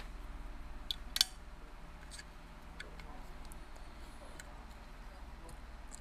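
A few faint clicks and taps of small parts being handled as a split-disc PAS magnet ring is fitted over the bolts of a bicycle chainring, the clearest two about a second in, over a low steady hum.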